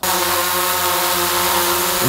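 Quadcopter drone hovering overhead, its propellers giving a steady, even buzz.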